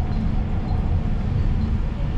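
Steady rumble of a MARTA rapid-transit railcar running at speed, heard from inside the car.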